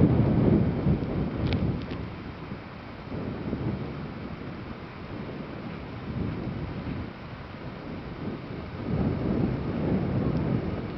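Wind buffeting the camera microphone in gusts, loudest at the start and again near the end, with a couple of faint light clicks about a second and a half in.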